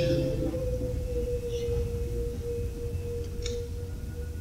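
A single steady tone held at one pitch, weakening near the end, over the low rumble of a live room recording, with a couple of faint ticks.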